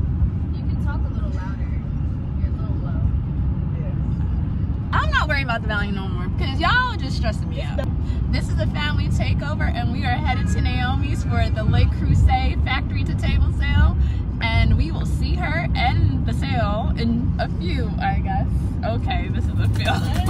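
Car cabin road noise while driving at speed: a steady low rumble of tyres and engine, with voices talking over it from about five seconds in.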